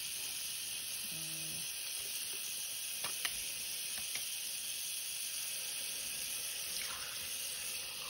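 Bathroom faucet running a steady stream of cool water onto a towel lining the sink basin, giving an even hiss. A couple of faint clicks come a few seconds in.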